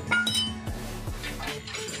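Background music with a single sharp metallic clink just after the start, a tool knocking against the van's front suspension parts, its ring dying away quickly.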